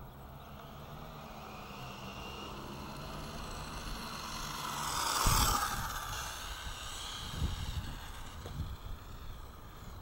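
Rush of air and road noise picked up by a camera riding on a fast RC car. It builds to a loud peak about five seconds in, followed by a few low thumps.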